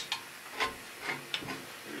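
A few faint, light clicks of a hand tool against the steel sawmill carriage frame, over a steady hiss.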